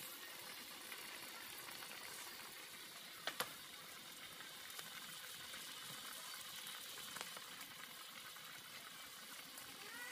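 Pot of pork afritada simmering on the stove, a faint steady sizzling bubble. Two sharp clicks come close together about three seconds in.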